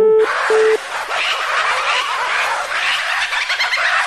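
Telephone busy tone, a steady beep about a quarter second on and a quarter second off, sounding twice as the call cuts off. From about a second in, a loud, dense chatter of many short, overlapping high calls follows.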